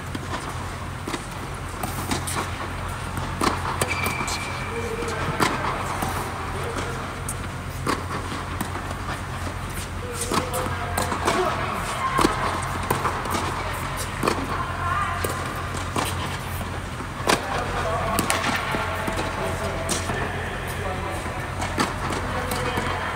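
Tennis balls being struck with rackets and bouncing on an indoor hard court during a rally: sharp pops every second or so, over a steady low hum.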